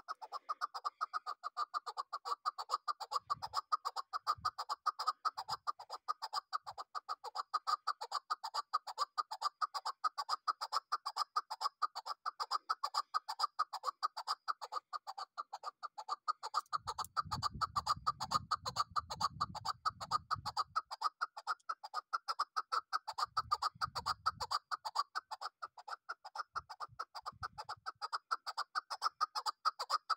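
Chukar partridge calling in a long, unbroken run of rapid, evenly repeated notes. A brief low rumble comes about two-thirds of the way in.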